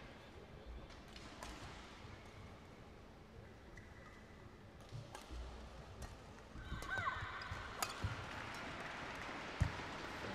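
Faint arena crowd murmur while the players are between points. About two-thirds of the way through, a badminton rally starts: sharp racket strikes on the shuttlecock and shoe squeaks on the court mat.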